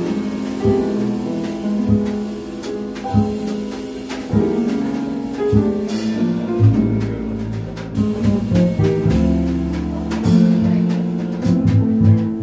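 Small jazz combo playing live: acoustic piano and plucked upright double bass, with the drum kit adding cymbal and drum strokes. The saxophones are not playing.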